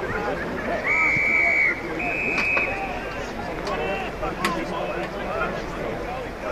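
Umpire's whistle blown twice in short, steady blasts about a second apart, over chatter from spectators and players.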